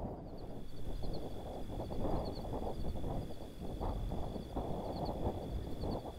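Open grassland ambience: an irregular rustling, windy noise through dry grass, with a faint steady high whine and small high chirps repeating over it.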